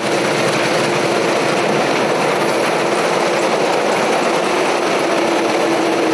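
CLAAS combine harvester running while it cuts standing wheat: a loud, steady machine noise with a faint steady hum under it.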